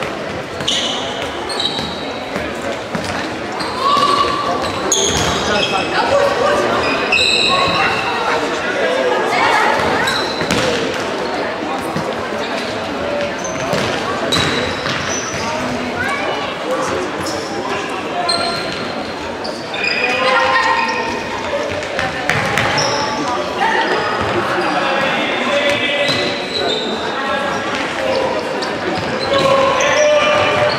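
Indoor football match in a sports hall: the ball being kicked and bouncing on the hard floor, with players' and spectators' voices and calls echoing around the hall.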